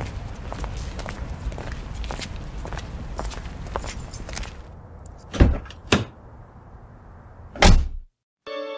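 A hissy, crackling background with scattered clicks, then two heavy thumps in quick succession past the middle and a third near the end.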